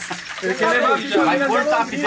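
Men's voices talking, with no clear words: only speech is heard.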